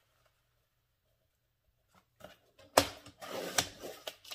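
About two seconds of near silence, then paper being handled, a sharp click and a second click, and the sliding of a Fiskars paper trimmer's blade carriage as it cuts a sheet of patterned paper.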